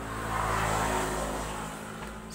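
A motor vehicle going past, its noise swelling to a peak within the first second and then fading away, over a steady low hum.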